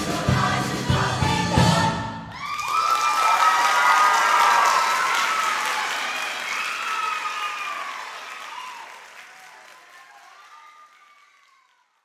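A show choir sings the last beats of an up-tempo song, which stops abruptly about two seconds in. The audience then breaks into applause and cheering with high whoops, which fade away near the end.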